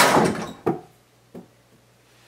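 A mini basketball strikes the backboard and rim of an over-the-door hoop with a loud thunk that rattles briefly through the door. It then bounces twice on the floor, the second knock fainter than the first.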